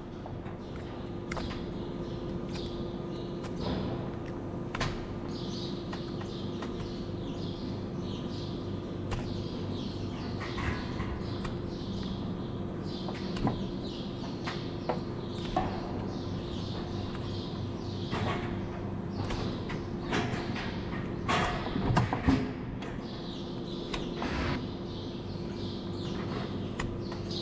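Hoof knife paring horn from a cow's claw: scattered short scraping cuts and knocks, with a few louder knocks about three quarters of the way in, over a steady low hum.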